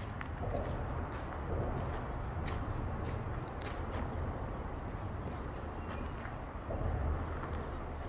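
Footsteps on rough outdoor ground, heard as scattered short clicks and scuffs, over a low rumble on the microphone.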